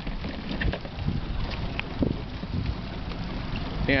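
Wind buffeting the microphone aboard a small open boat, with scattered light clicks and knocks and one stronger knock about halfway.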